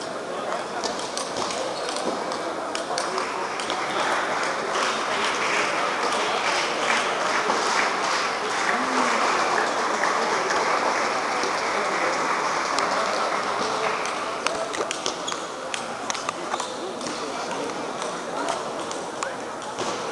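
Crowd murmur and chatter filling a sports hall, a little louder through the middle, with sharp clicks of table tennis balls off bats and table scattered throughout.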